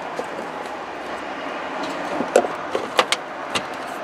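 A few sharp plastic clicks and rattles from the brake light bulb socket and its wiring plug being worked loose and pulled out of the tail light housing, over a steady background hiss.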